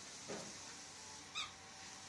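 Faint rustling of bedding as a schnauzer-mix dog digs through pillows, with one short, faint, high squeak about a second and a half in.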